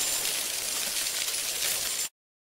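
A steady hiss of noise, strongest in the high pitches.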